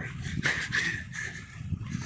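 Footsteps on a dirt trail, about two a second, with a short high-pitched sound about half a second in.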